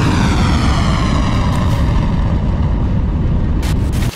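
Loud rumbling roar of a missile's rocket motor at launch, with a whooshing sweep that falls in pitch over the first couple of seconds. A few short crackling bursts come near the end.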